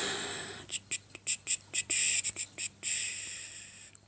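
A breathy exhale fading out, then about a dozen short hissing whispered syllables, as a woman mutters under her breath.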